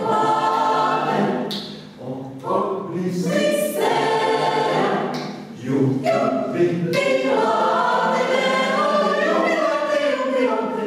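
Mixed choir of women's and men's voices singing a cappella, in phrases broken by short breaths about two seconds in and again past the middle.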